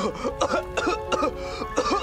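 A cartoon character coughing repeatedly in short hacking bursts, about four a second, over background music with held tones.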